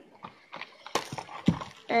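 Handling noise: a few light knocks and rustles as small packaged craft items are put down and picked up, with a sharp click about a second in and a dull thump about half a second later.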